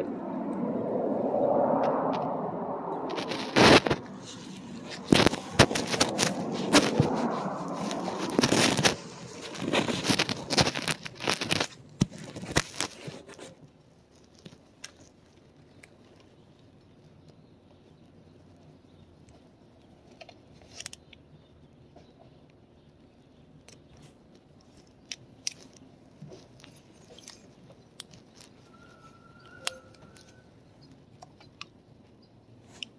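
Decal sheet and its paper backing crinkling and rustling close to the microphone as it is peeled apart, with many sharp crackles and clicks, for about the first half. After that, only faint scattered clicks of fingers handling the decal.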